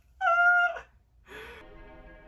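A short, high, steady-pitched vocal cry for about half a second, then soft anime soundtrack music comes in with a held, sustained chord.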